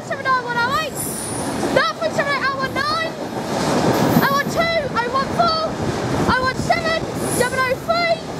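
Engineering freight train wagons passing at speed: a continuous rushing and rumbling of wheels on rails, with clusters of short high-pitched squeals that come and go.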